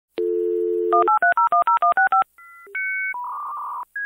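Telephone sound effect: a steady dial tone, then a quick run of about ten touch-tone digits being dialed, followed by a few held electronic line tones, the last one warbling.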